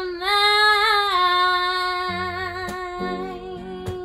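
A woman holds one long sung note with a slight vibrato, the closing note of the song. Strummed acoustic guitar chords come in about halfway and ring under the held note.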